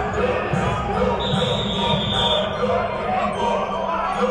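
A referee's whistle blown once and held for about a second, starting about a second in, over voices and low thumps of players on an indoor practice field.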